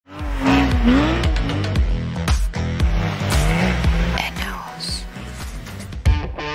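An intro mix of car sounds, an old Suzuki Swift's engine and squealing tyres, with voices over music with a beat of about two a second.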